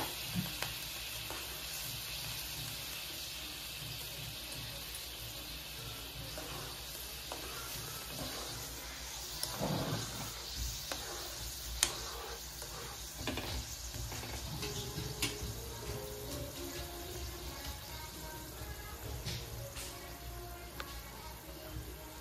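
Sauce simmering in a nonstick wok, a steady bubbling hiss, with a few clinks and scrapes of a metal spoon stirring it partway through.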